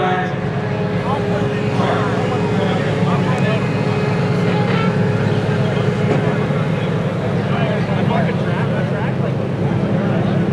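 A vehicle engine running steadily with a low, even rumble, with indistinct voices of people around it.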